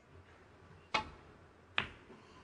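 Snooker break-off: a sharp click of the cue tip striking the cue ball, then under a second later a second click as the cue ball strikes the pack of reds.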